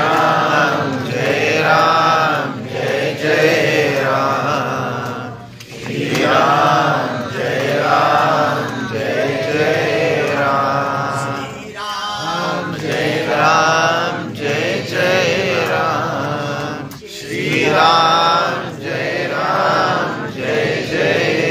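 A man singing a Hindu devotional chant in long melodic phrases, over a steady low drone, with brief breaths between phrases.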